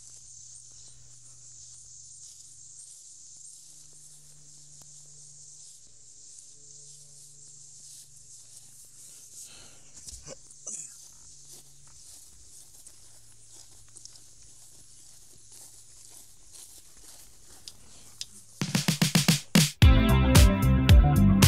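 Faint, steady high-pitched outdoor hiss with a weak low hum and a few soft clicks around the middle. Near the end, loud background music with a strong beat cuts in.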